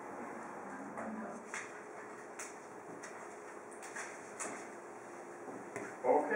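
Quiet room tone in a small classroom: a faint steady hum with a few soft clicks.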